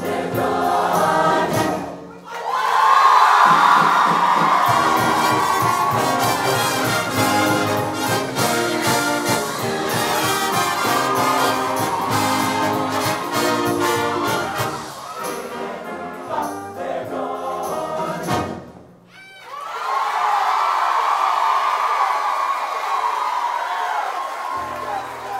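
Live show-choir band with a brass section playing a loud up-tempo number, with ensemble voices and sharp percussive hits. The music breaks off briefly about two seconds in and again near the nineteen-second mark before coming back in.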